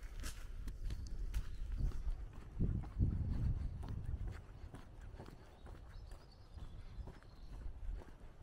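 Footsteps of a person walking on a worn asphalt road, a steady run of short steps. A louder low rumble comes in about two and a half seconds in and lasts about a second.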